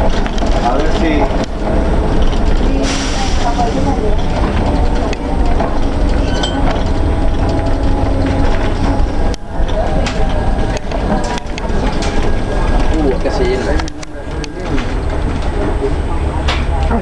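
Cabin noise of a Flyer electric trolleybus in motion: a steady low rumble with several sharp knocks and clatters in the second half, under the chatter of passengers' voices.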